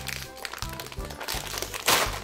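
A foil snack bag crinkling as it is pulled open by hand, with one louder rip near the end, over background music.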